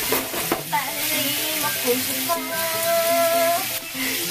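Samgyeopsal (pork belly slices) frying in a pan with a steady sizzling hiss, under background music and a voice holding a long note near the middle.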